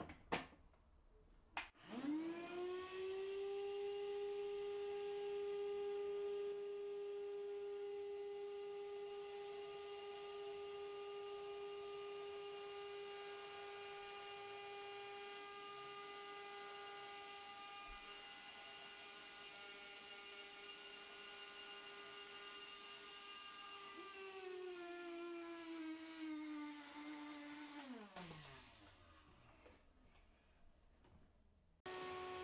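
After a couple of clicks, a small handheld electric motor tool with a hose nozzle, held into a dishwasher's drain sump, spins up to a steady whine. About 24 seconds in its pitch drops, and near the end it winds down and stops.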